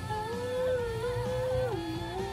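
A high male voice humming a long held melody note that steps down in pitch near the end, over the backing music of a Cantonese pop ballad.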